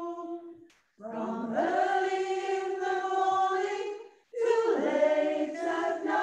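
Gospel choir singing in harmony, holding long notes. The singing breaks off briefly twice between phrases, about a second in and about four seconds in.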